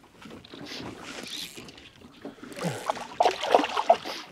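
Water sloshing and splashing against the side of a skiff as a bonefish is released by hand beside the hull, faint at first and louder and choppier in the last second or so.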